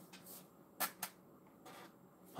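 Two short sharp clicks, a little under a second in and about a quarter second apart, over a faint steady low hum.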